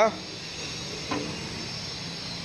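Steady background hiss with no distinct event, and a brief faint vocal sound about a second in.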